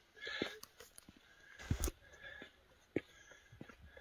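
Footsteps on a rocky stone path, with irregular knocks and clicks as the walker climbs. There is a soft hissy burst near the start and one louder, deep thump a little under two seconds in.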